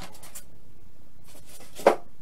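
Styrofoam packing inserts rubbing and scraping against a cardboard box as they are lifted out, with one sharp knock near the end.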